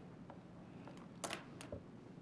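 Quiet room tone with a short, soft noise a little past a second in.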